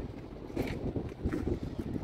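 Wind buffeting a phone's microphone: an uneven low rumble that comes and goes in gusts.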